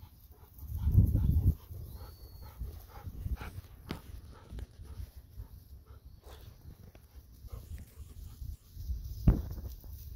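Golden retriever close by on a walk, with scattered light clicks and rustles. A short low rumble about a second in is the loudest sound, and a single sharp click comes near the end.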